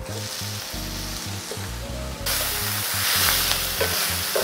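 Kale and sausage sizzling in a hot cast-iron skillet after a splash of water, the water steaming off to wilt the kale. The sizzle gets louder about two seconds in.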